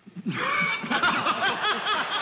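Studio audience laughing, many voices starting together at once and holding loud, with one person's distinct ha-ha laugh standing out about a second in.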